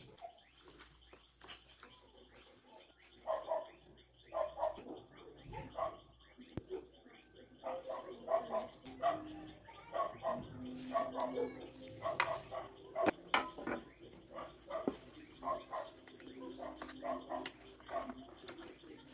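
Repeated short animal calls in small groups of two or three, with a few sharp clicks.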